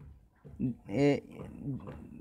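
Speech only: a man's hesitant voice with a drawn-out filler 'uh' and a few short voiced sounds between pauses.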